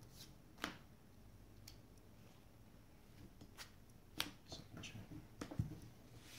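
Trading cards being handled on a playmat: a scatter of short, sharp snaps and taps as cards are picked up, flicked and set down, more frequent in the second half.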